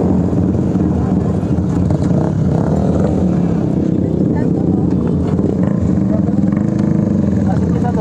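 Motorcycle engines running steadily at idle, with people talking over them.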